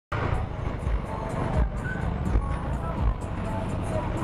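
A motorcycle riding in slow city traffic: engine and road noise with an uneven low rumble of wind on the bike-mounted camera's microphone.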